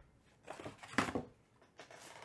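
Cardboard trading-card boxes being handled and set down on a table: a short cluster of light knocks and rustles, the loudest about a second in.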